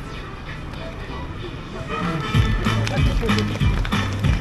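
Music with a heavy, regular bass beat comes in about halfway through, over a lower background of voices.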